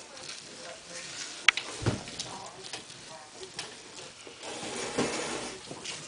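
A spatula stirring and scraping scrambled eggs in a frying pan on an electric stove, with scattered light clicks and knocks, the sharpest about a second and a half in, and a faint hiss of the eggs cooking near the end.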